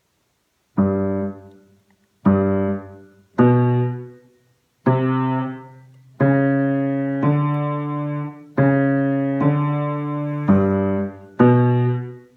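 Piano played slowly in its low register: about nine separate heavy notes or chords, each struck sharply and left to die away. The first comes about a second in, the early ones are short with silences between, and the later ones are held longer.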